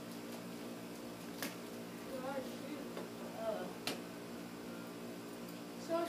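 A person's voice murmuring quietly twice over a steady low hum, with two sharp clicks, about one and a half and four seconds in.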